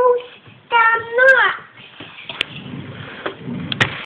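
A young child sings two drawn-out notes, the second ending in an upward slide, in the first second and a half; after that come a few soft clicks and knocks.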